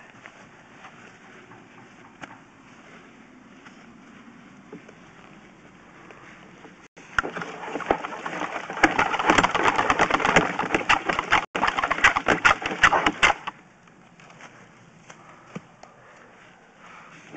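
Sewer inspection camera's push cable being pulled back out of the sewer line, a dense run of irregular clicks and rattles from about seven seconds in until about thirteen seconds in. Before and after it there is only a faint steady hiss.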